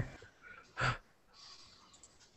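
A pause in a call over a video link: faint line noise, broken by one short breathy puff from a person at the microphone a little under a second in.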